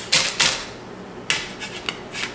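Parchment paper rustling and crinkling as a metal spatula is pressed over it on a flipped, freshly baked pizza crust, loudest in the first half second, followed by a couple of light clicks.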